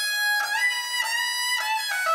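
Balochi folk music, instrumental: a bowed string instrument plays a melody in stepped notes with short slides between them, over a fainter lower accompaniment with a quick repeated pulse.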